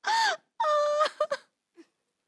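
A woman's two drawn-out vocal cries, not words: the first arches up and falls, the second is held on one high pitch, followed by a few soft clicks.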